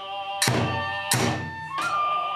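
Kagura music from a taiko drum and ringing hand-cymbal clashes, struck together three times about two-thirds of a second apart. Under the strokes a bamboo transverse flute holds a high note and steps up in pitch near the end.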